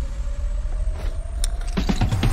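Deep, steady engine rumble under a slowly rising whine: a vehicle's engine drone in a film sound mix.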